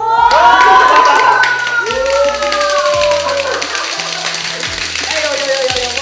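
A small group of men cheering and exclaiming together, long drawn-out rising then falling shouts, with hand clapping, over a background music track with a steady bass line.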